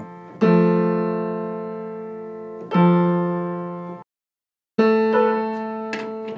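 Piano strings struck for aural tuning checks: the same two-note test interval is struck twice, each ringing and fading, and the sound cuts off abruptly just after four seconds. Near the end the A3–A4 octave is struck and rings on; it is still not clean, so its tuning needs more work.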